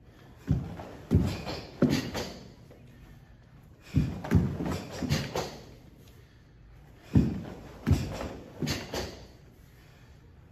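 Bare feet stamping and landing on a wooden floor as two karateka turn and kick. The thuds come in three quick bursts of three or four.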